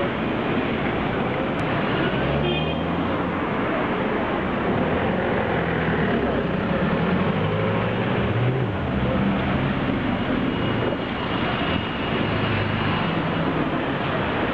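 City street traffic: a steady din of passing vehicles, with an engine note rising and falling about eight seconds in.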